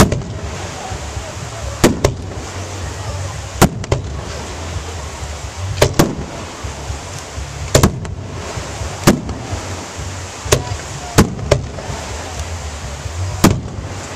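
Aerial fireworks shells bursting overhead: about a dozen sharp bangs a second or two apart, some in quick pairs, over a steady low rumble.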